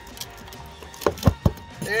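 Flat pry bar working under the flange of a metal roof vent to pull a roofing nail, with three sharp clicks about a second in, roughly a fifth of a second apart.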